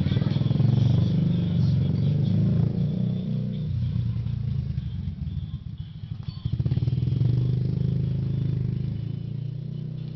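Motorcycle engine running close by. It is loud in the first three seconds or so, drops back, and swells again from about six and a half seconds in.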